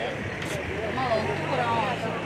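People talking at a busy outdoor gathering, with a steady low engine hum underneath.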